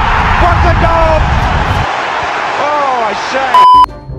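Young men shouting over bass-heavy electronic music, which drops out about halfway. Near the end comes a short, very loud, steady beep, a censor bleep laid over a word.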